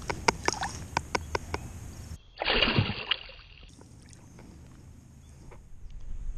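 Small splashes and drips of water as a bass is released by hand into a pond, with a run of sharp splashy ticks. About two seconds in comes a louder, muffled splash lasting about a second, then it goes quieter.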